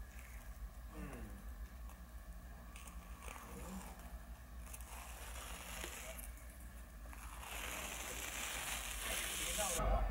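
Faint crinkling and rustling as a thin peel-off face-mask film is pulled away from the skin, then louder rustling for the last two seconds or so as a hand brushes close over the microphone.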